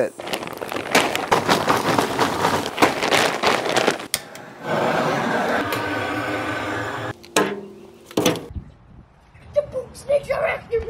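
Handheld gas torch hissing steadily for a few seconds while it lights the fire in an offset smoker's firebox, then cutting off abruptly. Before it comes a few seconds of rapid clattering and clicking; a couple of sharp clicks follow.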